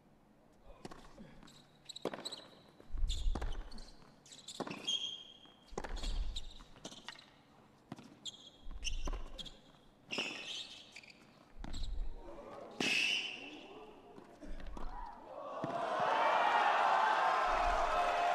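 Tennis rally on a hard court: a racket strikes the ball back and forth about once a second, with shoe squeaks among the shots. About three-quarters of the way in, the rally ends and the crowd breaks into applause and cheering.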